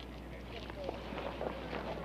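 Many footsteps at once as a group of police officers moves off: a dense, irregular scatter of shoe scuffs and steps, growing busier about half a second in, over a low steady hum.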